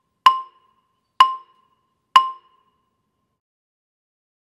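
A wooden bar on a mallet keyboard instrument struck hard three times with a yarn mallet, about one stroke a second, each note the same pitch and ringing only briefly. The strokes come from too much arm and too high a lift, giving the overbearing sound that a full stroke should avoid.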